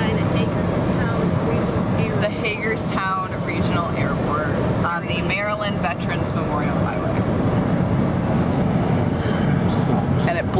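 Steady road and engine noise heard inside a car's cabin at highway speed, with a person's voice over it for part of the time.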